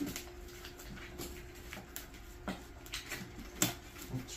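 Tourniquet strap being pulled tight and handled around a manikin's arm: scattered light clicks and rustles, with a sharper click about three and a half seconds in.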